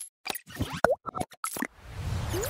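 Cartoon-style sound effects for an animated logo intro: a quick string of short pops and plops with silent gaps between them, and one louder pitched bloop a little before halfway.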